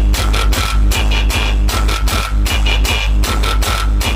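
Music with a steady beat and very heavy bass played loud through a large DJ truck's speaker stacks during a sound test.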